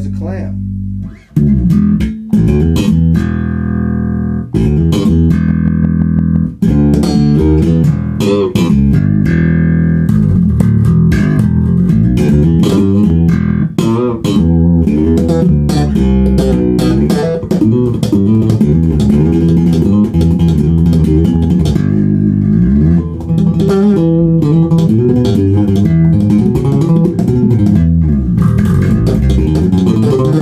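Dingwall NG2 fanned-fret electric bass played through a GK MB Fusion 800 amp head and Bear ML-112 cabinet, its pickups in the series position: a held low note that breaks off about a second in, then a continuous funk-style bass line of plucked notes with some sliding notes later on.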